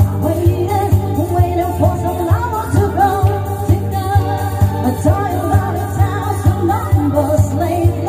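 Amplified live music: women singing into microphones over electronic keyboard accompaniment, with a steady beat and strong bass.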